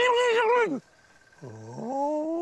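A man vocally imitating the Almasty's supposed speech with wordless calls. A high, wavering call falls away, then after a short pause a second call rises from low pitch near the end. The imitation is meant as the creature telling off a youngster.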